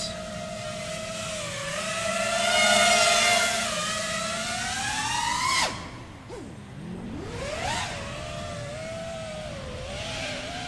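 The brushless motors and DAL T5040V2 propellers of a 5-inch FPV quadcopter whine with the throttle, heard from the camera on the frame. The pitch climbs to a loud peak, rises again, and then cuts off sharply about five and a half seconds in as the throttle is chopped. It swells back up near eight seconds to a steady whine. The motors are flying without C-clips, their bells held on by the magnets alone.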